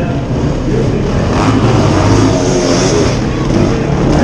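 Enduro motorcycle engines revving hard under load as riders climb a steep dirt slope, growing louder about a second and a half in.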